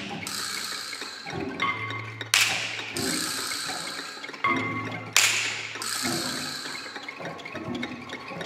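Avant-garde sonoristic orchestral music with no melody. Two sharp percussive strikes come a little under three seconds apart, each ringing off bright and high and each preceded by a low held tone, over a bed of scattered clicks and taps.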